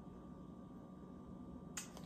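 Faint room tone with a steady low hum, and one short sharp click near the end.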